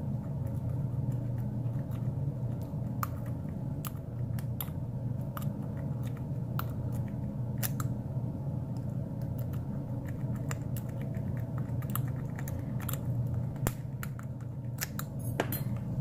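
Sparrows Octo-Rake worked in and out of the keyway of a brass Wilson Bohannan padlock against a tension wrench, giving scattered faint metallic clicks and scrapes as it rakes the pins. A steady low hum runs underneath.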